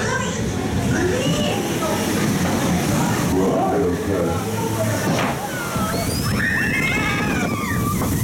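Water sloshing and rushing around a log flume boat, over a steady din, with voices in the background that rise and fall in pitch near the end.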